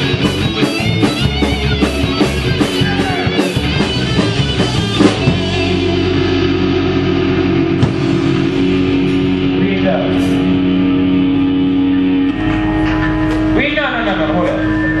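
Live rock band with distorted electric guitars playing over a steady beat, then holding a long sustained chord from about five seconds in. A voice comes in near the end.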